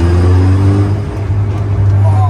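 Dallara Stradale's 2.3-litre turbocharged four-cylinder engine running as the car is driven, heard from the cockpit as a loud, steady low drone.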